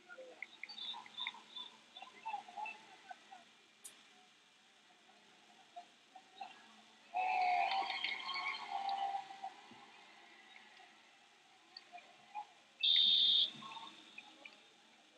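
Arena voices and shouting behind a grappling match, with a louder burst of yelling about seven seconds in. Near the end comes one short, loud, high-pitched electronic beep from the match timer as the clock reaches zero, signalling the end of the match.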